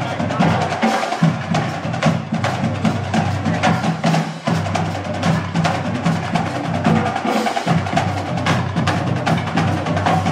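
Live band music led by drums: a fast run of stick strokes over low, steady sustained notes.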